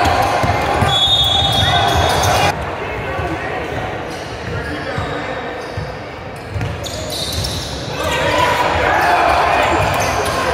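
Basketball being dribbled and bouncing on a hardwood gym court, with players' and spectators' voices echoing in the large hall. It is louder at first, drops after about two and a half seconds, and picks up again near the end.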